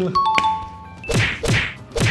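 Edited-in sound effects: a short electronic tone just after the start, then three swishing hits about half a second apart, each sweeping down into a low thump.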